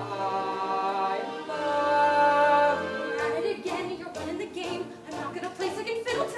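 Show-tune duet singing: a young male voice holds one long note for about three seconds, then the music goes on in shorter, broken phrases.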